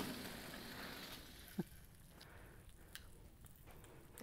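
Air hissing out of two released balloons as they shoot along a string toward each other, the hiss fading away within about a second. A brief squeak comes about a second and a half in.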